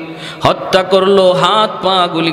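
A man preaching a Bengali Islamic sermon into a microphone in a drawn-out, sing-song intonation, with long held pitches and rising slides.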